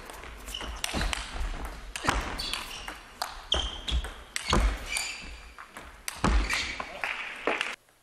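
Table tennis ball struck by bats and bouncing on the table in quick, irregular clicks through a rally, with a few short high squeaks in between. The sound stops abruptly near the end.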